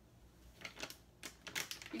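A plastic stand-up pouch of chia seeds being picked up and handled, giving a few short crinkles and clicks through the second half.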